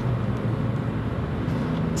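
Steady running noise of a car heard from inside its cabin: a low even hum under a continuous hiss.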